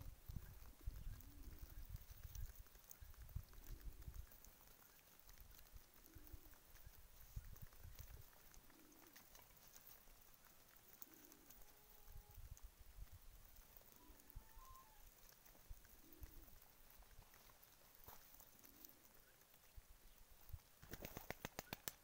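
Domestic pigeons cooing faintly, soft low coos repeating every second or two, among low rumbles. Near the end comes a quick, even run of clicks or flaps.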